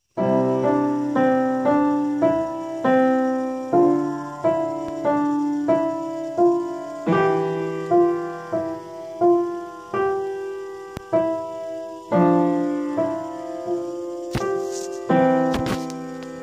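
Upright acoustic piano played by a beginner: a simple, slow piece in C position, single notes struck about one to two a second over lower notes, each ringing and fading, with a couple of short pauses. A couple of brief clicks near the end.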